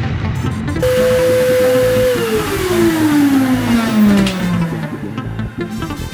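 Handheld power drill running against a cast-resin pyramid: about a second in a steady motor whine starts with a gritty hiss of the bit on the resin, then the whine slides down in pitch over about three seconds as the drill slows. Background music plays underneath.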